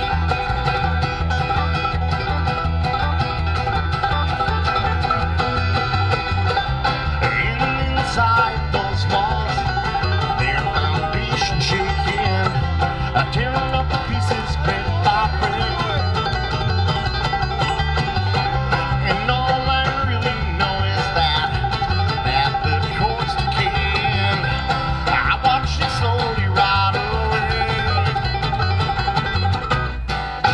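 Acoustic string band playing live: banjo, acoustic guitar and upright bass, the bass keeping a steady beat under the plucked banjo and guitar. It is an instrumental passage, with no singing.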